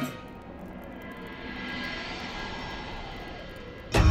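A long whoosh sound effect that swells gently and then fades, with faint sustained music tones underneath.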